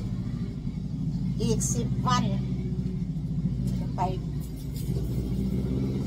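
A steady low mechanical hum, like a motor running, continues under a few brief spoken words.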